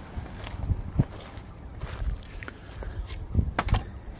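Wind noise on the microphone of a handheld camera, with a handful of short knocks and thumps, the loudest a quick cluster of three near the end.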